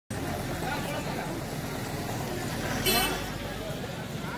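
Busy street ambience: crowd chatter and passing traffic, with one brief, loud pitched sound just before three seconds in.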